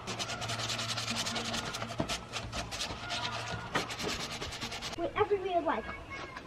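A round sanding disc rubbed by hand across the cut end of a white PVC pipe, smoothing it off. The disc makes quick, repeated scraping strokes that stop about five seconds in.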